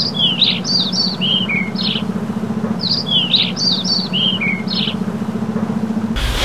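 Cartoon birdsong sound effect: a phrase of quick, falling chirps played twice over, on top of a steady low hum.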